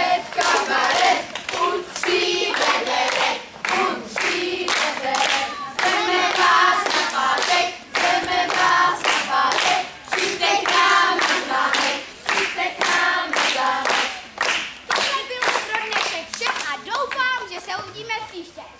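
A group of children singing a song while hands clap steadily in time, about two claps a second.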